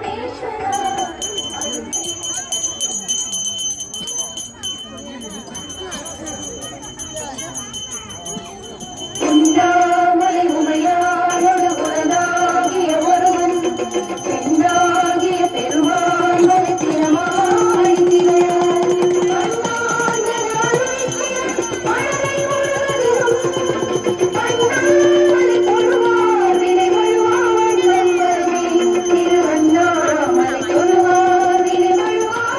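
Temple devotional music with a small bell rung rapidly and continuously, as in puja. About nine seconds in the melody turns much louder, with long held notes that bend between pitches.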